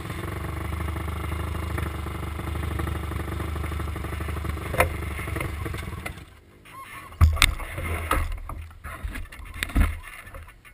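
Off-road vehicle engine running steadily for about six seconds, with one sharp click near the five-second mark. The engine sound then falls away, leaving a few scattered knocks and thumps.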